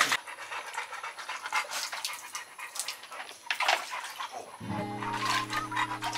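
Large pit bull mix dog panting with quick, uneven breaths. Background music with held notes comes in in the last second and a half.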